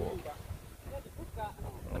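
Voices: speech trailing off at the start, then a short faint vocal sound about a second and a half in, over a low rumble.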